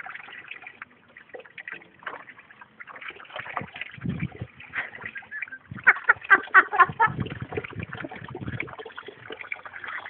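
Tap water running into a plastic tub, with irregular splashing as a toddler plays in the stream.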